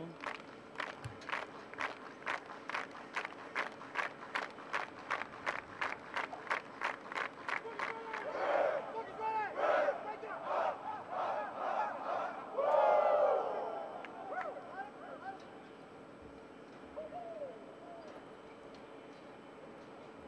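A group of football players clapping in unison, about three claps a second for some eight seconds. The clapping then breaks into loud shouting and yelling from many voices that dies away after a few seconds.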